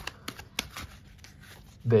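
A deck of tarot cards shuffled by hand, overhand: a quiet, irregular string of light papery ticks as packets of cards slide and drop against each other.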